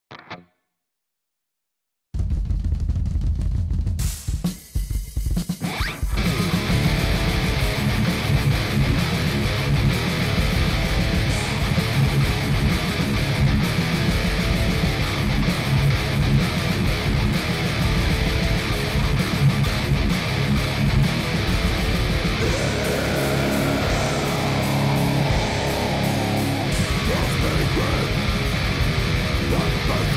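Metal guitar cover: a distorted Jackson RR3 electric guitar, tuned to C# standard and run through a Mooer GE200 amp modeller, playing riffs over a loud backing drum track. The music comes in about two seconds in, drops out briefly a few seconds later, then runs on steadily.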